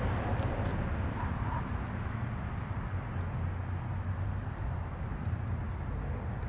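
Steady low outdoor rumble with a soft hiss over it, no single event standing out.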